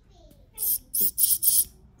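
Iwata Neo airbrush blowing four short bursts of air from its nozzle, one after another in a little over a second.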